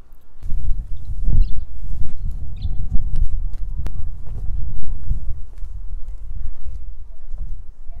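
Wind buffeting the microphone, a loud uneven low rumble that starts about half a second in, with a few faint knocks over it.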